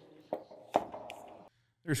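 Two short knocks about half a second apart as a black aluminium pool-fence post is pushed and flexed by hand; the post still has quite a lot of flex in it.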